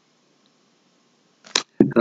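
Near silence in a pause of a man's speech, then a short sharp click and his voice starting again near the end.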